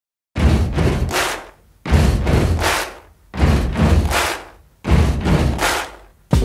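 Four heavy, deep booming hits, evenly spaced about a second and a half apart, each fading over about a second: an edited intro impact sound effect.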